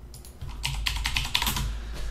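Computer keyboard typing: a run of key clicks, sparse at first and quicker from about half a second in.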